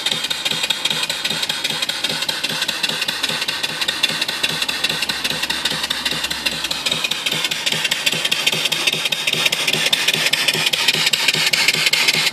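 Home-built single-cylinder vertical steam engine (3-inch bore, 3-inch stroke) running steadily at speed: a rapid, even beat of strokes with a steady hiss above it.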